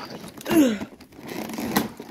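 Rustling and scraping of a large toy box's plastic-wrapped packaging tray being handled, with a sharp click near the end. A short falling vocal exclamation comes about half a second in.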